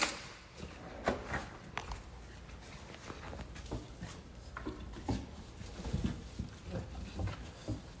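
Scattered soft knocks, clicks and rustles in a quiet room, with the clearest knocks about a second in and again around five to six seconds in.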